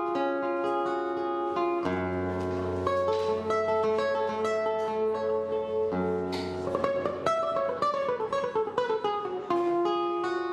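Nylon-string classical guitar played fingerstyle, picking single notes and arpeggios. A low bass note rings under the picking from about two seconds in, and near the end a quick run of notes steps downward.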